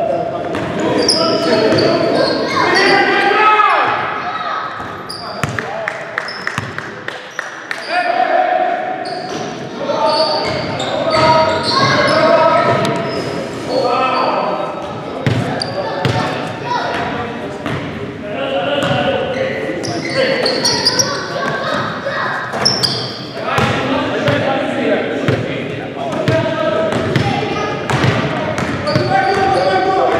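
Basketball game in a gym hall: players' indistinct shouts and calls, with a basketball bouncing on the hardwood court, all echoing in the hall.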